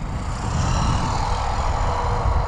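Traxxas Bandit VXL RC buggy driving away on asphalt: its brushless motor gives a steady whine over tyre noise, above a low rumble.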